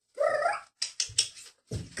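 A child's high, wavering call imitating a horse's whinny, followed by a quick run of sharp clicks.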